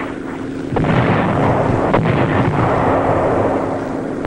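Rumbling of an artillery bombardment that swells about a second in and goes on, with a sharper report about two seconds in, over a steady low hum of an old film soundtrack.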